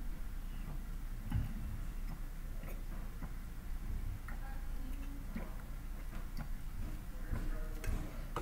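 A person drinking from a plastic bottle: irregular swallowing gulps and small mouth clicks over a low steady hum.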